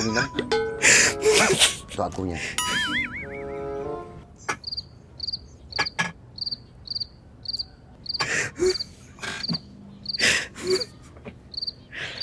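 A cricket chirping steadily, about two short pulsed chirps a second, with a brief warbling tone just before it begins. Speech breaks in a few times.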